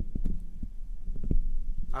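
Handling noise: a run of short, low thumps and knocks, several within two seconds, the strongest about a second and a quarter in.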